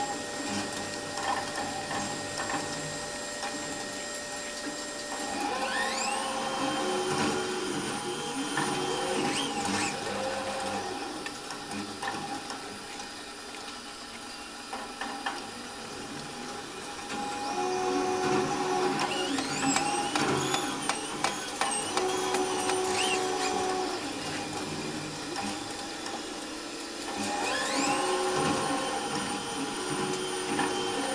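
Raimondi tower crane's electric drive motors heard from the operator's cab, over a steady hum. Three times a whine rises in pitch as a motor is ramped up, holds at a steady pitch for a few seconds, then falls away: about five seconds in, about seventeen seconds in, and near the end.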